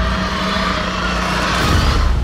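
A giant crocodile's roar made with film sound design: one long, loud, rasping roar over a deep rumble. It begins just before this moment and fades near the end.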